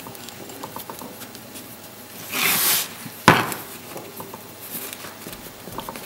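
Fingers pressing and packing Delft casting clay into a metal mould frame: quiet scraping and rustling with small clicks, a short hissing scrape about two and a half seconds in, and a sharp knock of the metal frame just after three seconds, the loudest sound.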